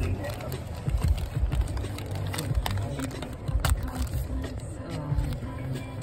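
Steady low rumble inside a car's cabin, with faint music and muffled voices in the background.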